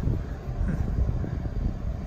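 Steady low rumble of background noise, a dull drone with no distinct event.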